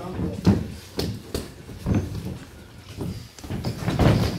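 Boxing gloves landing punches: a series of sharp, irregularly spaced thuds, about seven in four seconds, the loudest about half a second in.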